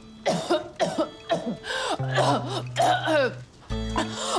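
A woman's coughing fit: a run of about seven harsh, rasping coughs in quick succession, as if something has gone down the wrong way.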